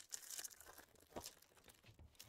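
Faint tearing and crinkling of a foil trading-card pack wrapper being ripped open by hand, in short rustles with a few sharper crackles.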